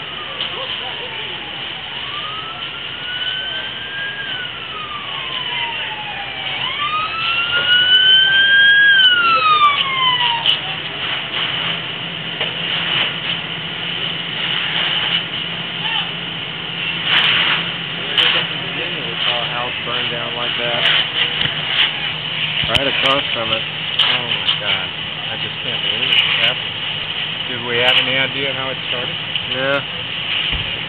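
An emergency vehicle's siren wailing in slow rising and falling sweeps, each about four seconds long, stopping about ten seconds in. After that a steady engine hum runs under scattered sharp knocks and pops.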